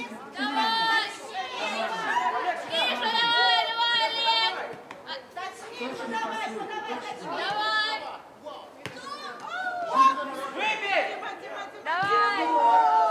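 Several voices shouting and talking over one another, raised calls and chatter with no clear single speaker.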